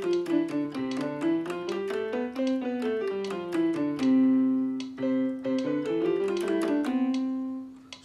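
Piano keyboard played with both hands in a fingering exercise: a steady stream of quick notes moving stepwise up and down, with one longer held note about four seconds in.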